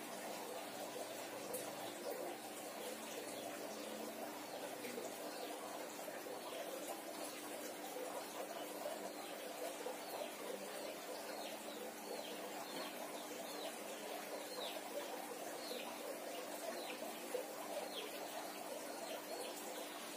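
Birds chirping: a scatter of short, high, falling chirps, mostly in the second half, over a steady low hum.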